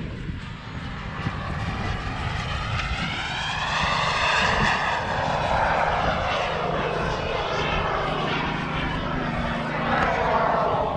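Turbine engine of a radio-controlled model jet flying past, its sound swelling with a sweeping rise and fall in pitch to its loudest about halfway through, then easing off, and building again right at the end as it comes round once more.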